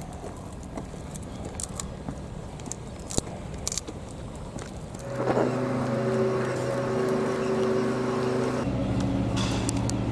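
A motor starts running with a steady hum about halfway through, changing to a different, lower pitch near the end, over faint outdoor background noise.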